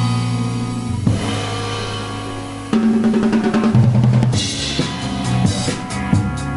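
A small band playing an instrumental passage live: drum kit with electric guitar and bass guitar. A little before halfway the band gets suddenly louder, with busier drumming and cymbals washing over the second half.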